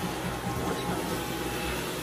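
Stick vacuum cleaner running steadily as its powered floor head is pushed over a rug.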